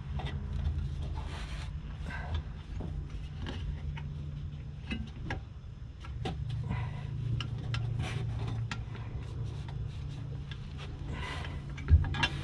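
Scattered metal clicks, taps and scrapes as a mounting clamp is worked by hand onto an H&R rear sway bar under a car, over a steady low hum.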